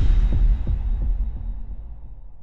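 Intro sting sound effect: a deep bass impact with a low rumble, followed by a few low pulses, about three a second, fading out over the next second or two.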